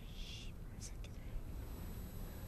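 A man's short, breathy exhale at the start, then two faint clicks, over a low steady rumble.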